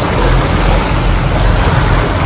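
Motor yacht running at speed: loud, steady rushing of the churned wake water over a low engine rumble, with wind buffeting the microphone.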